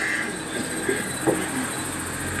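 Steady background hiss with a low electrical hum, a high, rapidly pulsing buzz on top, and a few faint short sounds in the middle, picked up through an open microphone.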